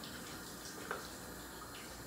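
Faint steady hiss of room tone, with one faint tick a little under a second in.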